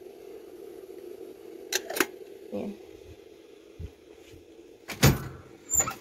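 A few short sharp clicks and knocks over a steady low hum, the loudest knock about five seconds in.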